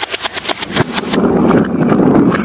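Painted bottles being crushed: a rapid run of sharp cracks, about eight a second, thickening into a dense, loud crunching crackle in the second half.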